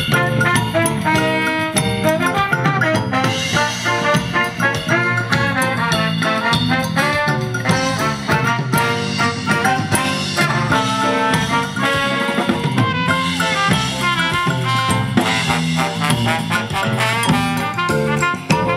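A live band playing an upbeat tune, a horn section with saxophones over a drum kit, congas and electric guitar.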